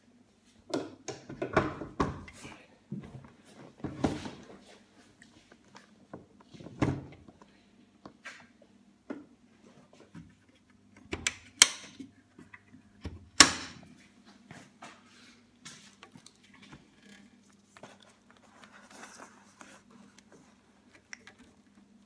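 Irregular knocks, clunks and rustles of a motorcycle Tour-Pak and its mounting rack and wiring being handled, with a cluster of knocks in the first few seconds and the two sharpest, loudest knocks a little past the middle.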